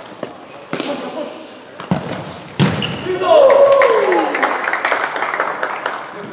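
Futsal ball struck on a hard indoor court, a few knocks and then a sharp hit about two and a half seconds in, followed at once by players' loud shouts and cheering for the goal, with one yell falling in pitch.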